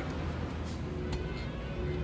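A quiet, sustained keyboard tone held over a low steady hum, with a couple of faint clicks.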